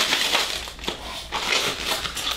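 Thin clear plastic wrap being pulled off a styrofoam case and crumpled in the hand: an irregular crinkling crackle.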